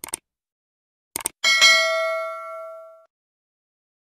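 Subscribe-button animation sound effect: short mouse clicks at the start and again about a second in, then a bright notification-bell ding that rings for about a second and a half and fades.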